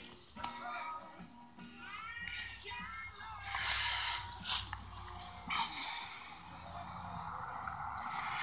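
Birds chirping in a quick run of short calls, over a steady high hiss, with two brief knocks a little before and after the middle.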